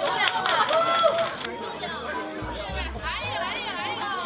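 A group of voices exclaiming over hand clapping, cut off about one and a half seconds in by background music: a pop song with a wavering sung voice over a bass line.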